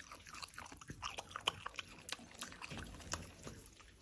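Virginia opossum chewing food close to the microphone: a run of soft, irregular smacking clicks.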